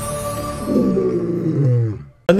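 A lion-style roar in a movie-studio logo fanfare, falling in pitch, starting well under a second in and lasting about a second, over a held orchestral note.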